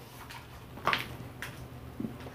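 Handling noise of a plastic half-face respirator being picked up: a short knock about a second in and a fainter click shortly after, over a faint low hum.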